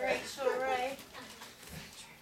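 A high-pitched voice makes a drawn-out vocal sound with wavering pitch for about the first second, then fades to quieter room sound.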